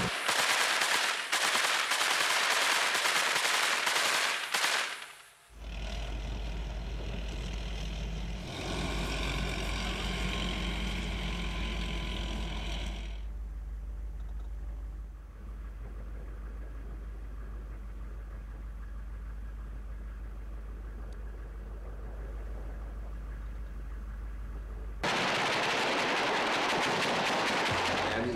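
Rapid gunfire during the first few seconds, then a steady low rumble with noisier stretches over it, and another loud noisy stretch near the end.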